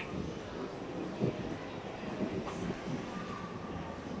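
Steady low rumble of a large indoor hall's ambience, with faint crowd voices in the background.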